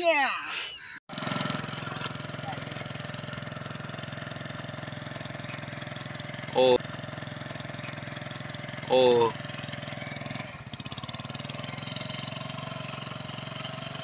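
A man's voice shouting a sung line, cut off about a second in, then a steady engine-like drone with a fast, even pulse. Two short calls rise above the drone, at about seven and nine seconds in.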